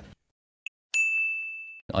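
A single bright bell-like ding about a second in, ringing on one clear high note and fading over just under a second, after a faint tick.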